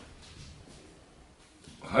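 Faint, even room tone with light hiss in a pause between speakers, and a man's voice starting near the end.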